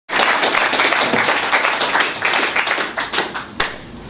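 Audience applauding, the clapping thinning out and fading near the end.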